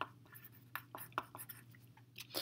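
Pencil writing on paper, faint: a few short scratchy strokes as words are written out.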